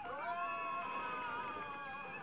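A cartoon girl's long, high-pitched scream, rising at first and then held with a slight waver for about two seconds, played through a TV speaker.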